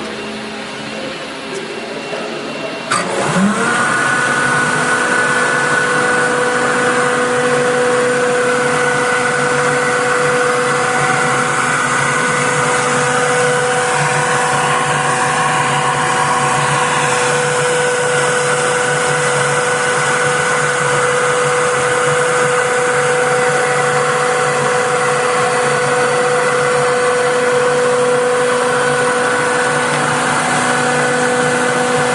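Blower of a Glatt Uni-Glatt lab fluid bed dryer switched on about three seconds in. It spins up quickly to a steady whine made of several fixed tones over a rush of air, after a quieter steady hum.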